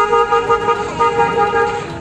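A toy horn sounding one steady high tone with a brief break about a second in, then stopping near the end.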